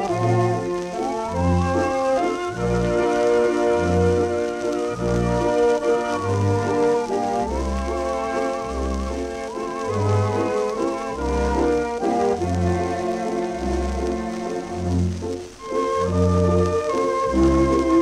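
A 1928 dance-orchestra waltz played from a 78 rpm shellac disc: a regular waltz bass under a wavering melody with vibrato and held chords, over the record's surface hiss and crackle. About fifteen seconds in the music briefly drops away, and a new section starts with long held brass notes.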